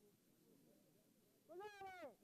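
A single drawn-out vocal call, about half a second long, starting about a second and a half in; it rises slightly, holds, then slides down in pitch. Faint background murmur before it.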